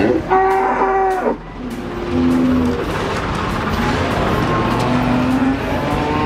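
Cattle mooing: one long, loud call near the start, then shorter, lower calls, over steady background noise.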